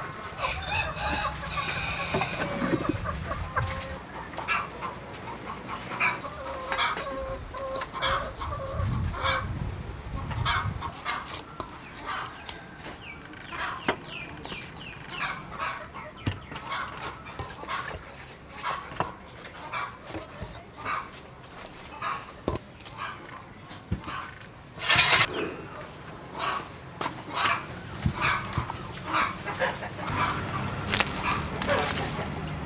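Chickens clucking, with short calls repeated throughout and one louder call near the end.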